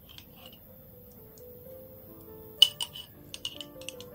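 A metal spoon clinking against a stainless steel bowl as jam is scooped into it. There is one sharp clink about two and a half seconds in, then several lighter taps, over soft background music.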